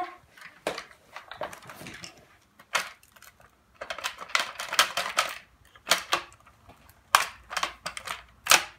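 Irregular plastic clicks, knocks and rattles of a Dyson DC11 turbo tool being handled and taken apart by hand, with the vacuum switched off. The clicks come in clusters, busiest about four to five seconds in.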